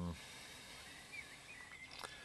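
The end of a spoken "um", then faint outdoor background with a few faint bird calls, short whistled notes a little after a second in.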